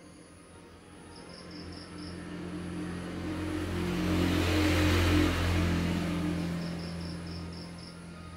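A motor vehicle passing by: its engine hum and road noise grow louder to a peak about five seconds in, then fade away.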